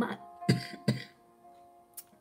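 A woman clearing her throat twice in quick succession, two short rough bursts about half a second apart, over soft background music with held tones. The throat clearing comes from a cold and sore throat.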